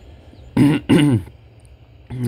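A man clearing his throat in two short voiced bursts, about half a second and a second in.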